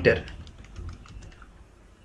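Faint clicks of typing on a computer keyboard: a quick run of keystrokes.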